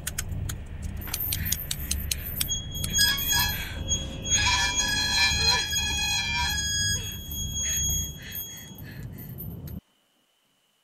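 Horror-film sound design: a low rumble under scattered sharp clicks, joined by a cluster of shrill, sustained tones that hang for several seconds, then everything cuts off abruptly to silence just before the end.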